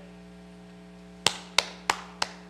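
A man clapping his hands slowly, three sharp claps about a third of a second apart starting just over a second in, over a steady electrical hum.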